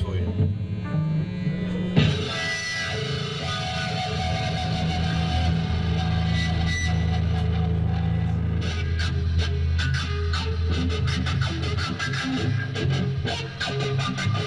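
Live rock band playing: electric guitar riffing over sustained low bass notes, with the full band coming in loud about two seconds in and rhythmic strokes growing denser later on.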